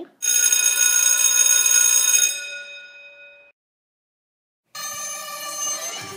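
An electric school bell rings steadily for about two seconds, then dies away. After a short silence, music with a drum beat starts near the end.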